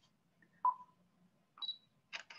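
Stop Motion Studio's capture timer beeping: a short beep with a brief ring about half a second in, then a higher, shorter beep near the end, as the countdown runs to the next photo.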